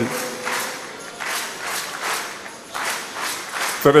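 Church hall ambience: soft background music with a regular beat of about two or three strokes a second, under general congregation noise.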